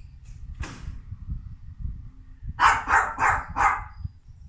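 A small dog barking four times in quick succession, starting a little past halfway through.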